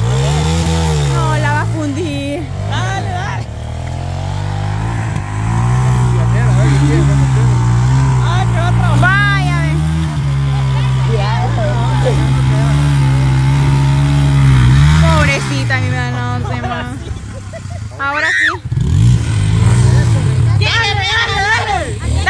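Small motorcycle engine revving up and down over and over while the bike is bogged in mud, the rear wheel spinning without grip. The revving eases off briefly after about fifteen seconds, then picks up again.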